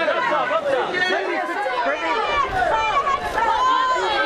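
Press photographers' voices calling out at once, a steady crowd of overlapping shouts and chatter.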